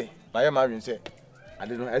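A man's voice, drawn out with a wavering pitch, chanting a repeated phrase in two stretches, with a short sharp click between them.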